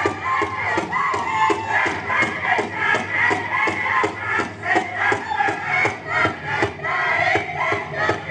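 Powwow drum struck in a steady, even beat, about two and a half beats a second, with a group of singers chanting a song in high voices over it.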